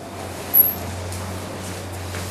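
Steady low hum under room noise, with a brief high-pitched squeak about half a second in.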